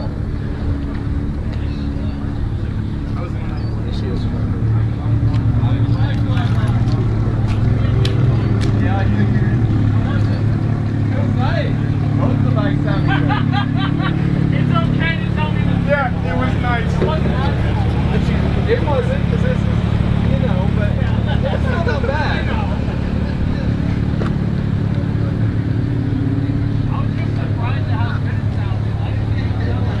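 A motor vehicle engine idling with a steady low hum, growing louder about five seconds in.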